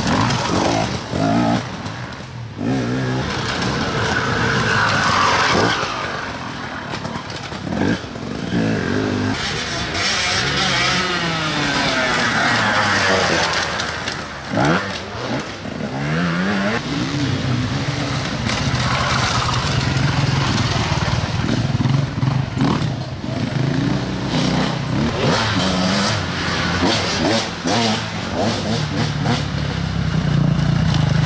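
Enduro dirt bike engines revving and accelerating along a muddy forest trail, the engine pitch rising and falling again and again as riders work the throttle through the turns.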